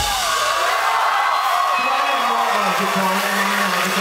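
Concert crowd cheering and whooping as a live rock song stops, the drums and bass cutting out at once. A low held note wavers underneath from about two seconds in.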